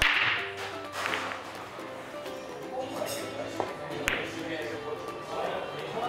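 Pool balls: a sharp crack as the cue ball is driven into the cluster of racked balls, then a few separate clicks over the next few seconds as balls knock together and against the cushions. Background music plays throughout.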